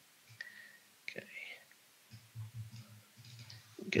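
Quiet mumbled speech under the breath, a soft "okay" among it, with a few soft clicks.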